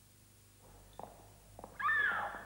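A few soft knocks, then near the end a loud, drawn-out cat's meow that glides up and down in pitch, as a spooky sound effect.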